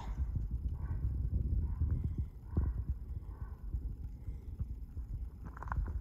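Low wind rumble on the microphone, with light footsteps and a few knocks on stony ground and a quick cluster of clicks near the end.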